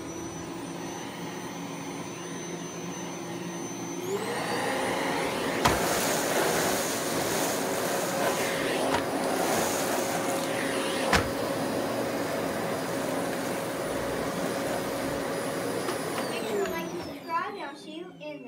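Dirt Devil Easy Elite SD40010 canister vacuum running with a steady whine. Its pitch steps up about four seconds in, two sharp clicks come through a few seconds apart, and the whine falls away as the motor winds down near the end.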